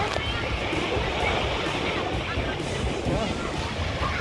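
Small waves breaking and washing up the sand in a steady surf noise, with the voices of a crowd of bathers in the shallows and wind rumbling on the microphone.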